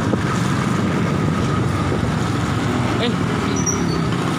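Motorcycle engine running steadily while being ridden, a continuous low rumble mixed with wind and road noise on the phone's microphone.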